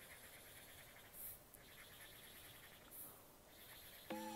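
Near silence, with two faint, short scratchy dabs of a felt-tip marker on flipchart paper, about a second in and near three seconds in.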